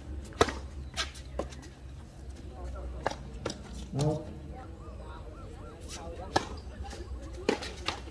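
Tennis ball struck by rackets and bouncing on a hard court in a doubles rally: a series of sharp pops, the loudest a serve about half a second in, then hits and bounces every half second to two seconds.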